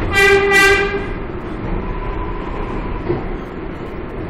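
R142A subway train's horn sounding two quick toots in the first second, heard from inside the car, over the steady rumble of the train running on the rails.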